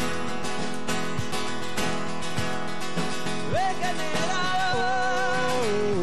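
A rock band playing live, with drums and guitar. A male lead voice comes in singing about three and a half seconds in.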